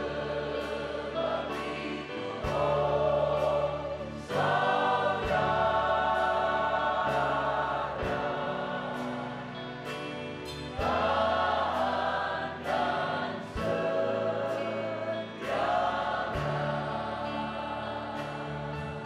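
A church worship choir of men and women sings a gospel song in Indonesian with instrumental accompaniment and a regular drum beat. The phrases swell louder and ease off several times.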